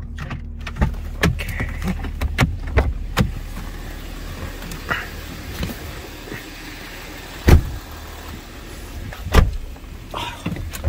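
Car doors and cabin being handled as people climb out and back in: a run of clicks and knocks, then two heavy door thuds about seven and a half and nine and a half seconds in, over a steady low hum.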